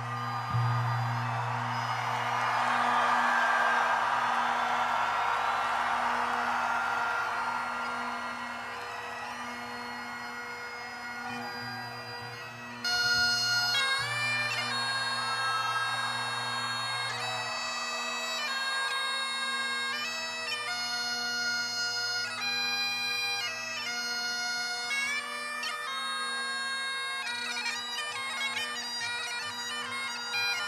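Great Highland bagpipes: the drones sound steadily under a loud wash of noise, then about 13 seconds in the chanter takes up a melody of held notes over the drones.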